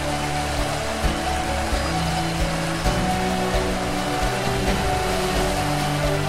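Background music with held notes over the steady rush of a fast-flowing river running over rapids.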